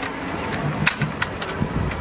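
A handful of sharp clicks and knocks in the second half, from a fibreglass hot stick being handled and raised in a lineman's bucket, over a steady low rumble.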